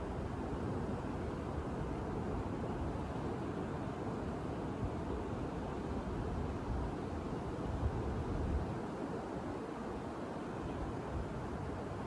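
Ocean surf breaking on the beach, with wind rumbling on the microphone and a stronger gust about eight seconds in.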